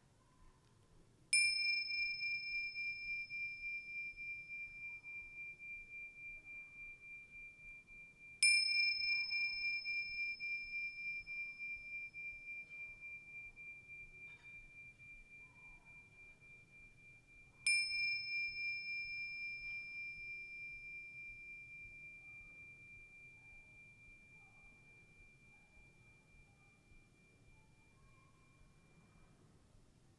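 Small handheld bells rung three times, each strike leaving one long high ringing tone that slowly fades with a slight wavering. The last ring dies away near the end.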